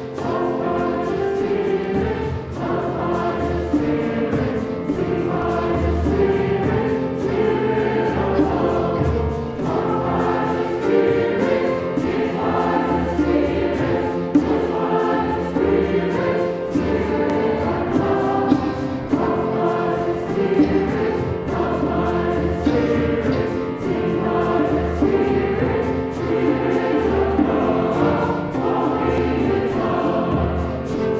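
Mixed church choir of men and women singing an anthem, accompanied by piano.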